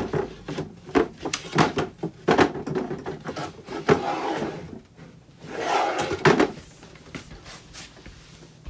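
The drawer of an IKEA EKET cabinet being worked onto its runners at an angle: a string of knocks and clicks, with two longer scrapes of the drawer sliding, about four and six seconds in.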